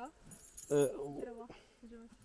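Light metallic clinking and jingling from the tether chain at a grazing calf's neck as it moves its head, with a short stretch of speech about a second in.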